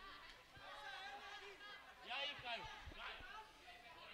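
Faint pitch-side ambience: distant voices of players and spectators chattering and calling, with a few light knocks.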